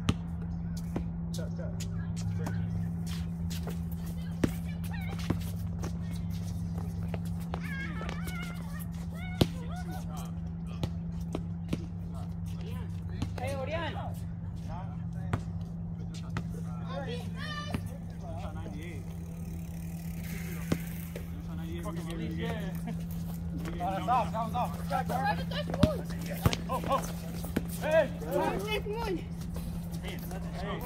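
Outdoor pickup basketball game: scattered knocks of the ball on the concrete court and indistinct shouts and talk of the players, over a steady low hum.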